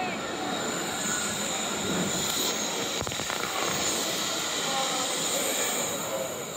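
Wuppertal Schwebebahn suspended-monorail car running along its overhead steel rail: a steady rumbling hiss of wheels on the track.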